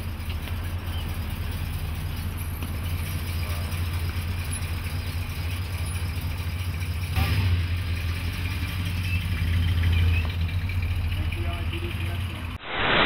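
A large old car's engine idling with a steady low rumble. There is a brief louder noise about seven seconds in, and the rumble swells again about ten seconds in.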